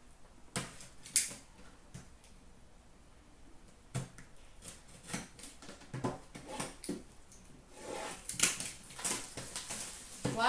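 A cardboard hockey card box being opened and handled: scattered clicks, scrapes and rustles of card packaging, the sharpest about a second in, with a denser run of rustling near the end.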